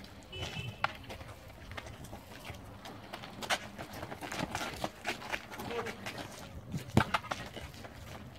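Ball kicks and running footsteps of a football kickabout on an asphalt court: scattered short taps and scuffs, with one sharp kick about seven seconds in as the loudest sound and a smaller one near the start.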